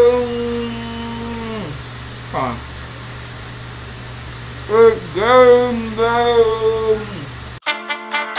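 A man's voice singing drawn-out notes, the held pitch sliding down at the end of each phrase, in two phrases separated by a pause, over a steady low hum. Near the end it cuts suddenly to an electronic music beat.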